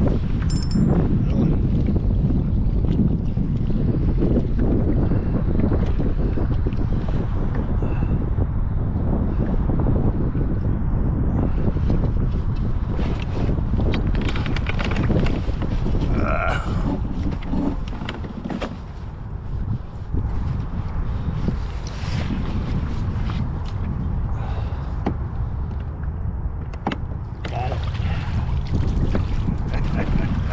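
Wind buffeting the microphone in a steady low rumble, with a few brief knocks over it.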